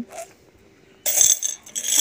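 Coins clinking and rattling against each other inside a ceramic coin bank as it is tilted in the hand, in two short bursts starting about halfway through.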